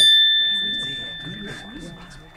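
A bright bell-like ding sound effect: struck sharply at the start, then ringing on one clear tone and fading slowly. It marks the puppet's ninja magic taking effect.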